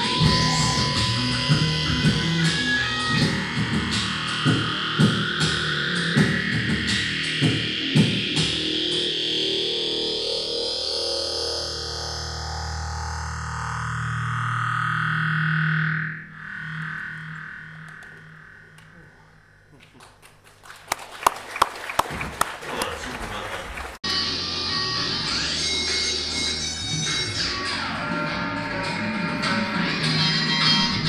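Live looped electric guitar music through effects pedals, distorted and layered. A long rising sweep builds over several seconds and breaks off about halfway through, the sound fades low, then a run of sharp hits comes in before the full music returns.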